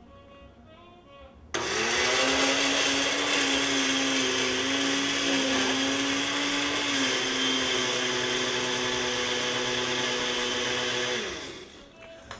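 Countertop blender switching on about a second and a half in and running steadily as it mixes a thick pancake batter of egg whites, protein powder, oats and cottage cheese, its pitch dropping a little partway through, then winding down near the end.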